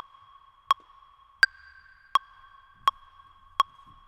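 Metronome click track ticking evenly at about 83 beats a minute: six short, pitched beeps, the one about a second and a half in higher and brighter as the accented downbeat. It counts in before the drum exercise starts.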